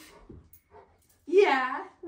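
One short pitched vocalization from a Newfoundland dog, a little past the middle, after a quiet stretch.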